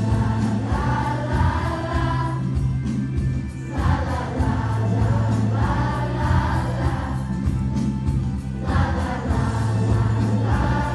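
A large children's choir of fifth-graders singing together over a bass-heavy musical accompaniment. The singing comes in long phrases with short breaks between them.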